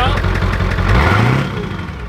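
1997 Ford F-250's 7.3-litre turbo-diesel V8 running at the tailpipe with an even low pulse, revving up about halfway through with a rising pitch, then easing off.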